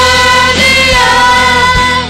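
Live church worship band playing, with a singer holding one long note over bass, guitars and a few drum beats.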